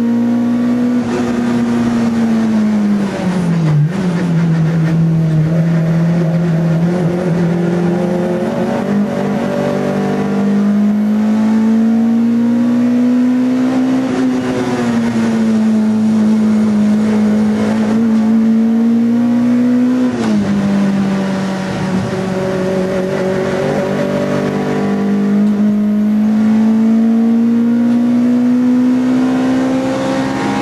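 VW Golf III GTI 16V race car's two-litre four-cylinder engine running hard at racing speed, heard from inside the cabin. Its note climbs slowly and falls back several times, with a sharp drop about twenty seconds in.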